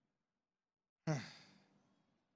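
Silence, then about a second in a man's single short hesitant "uh" into a microphone, falling in pitch and fading out with room echo.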